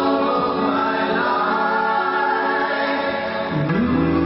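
Live band music with singing voices, the notes held and sustained; near the end a low note slides upward.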